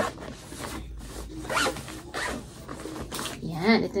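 Zipper on a fabric packing cube being pulled shut in several short pulls.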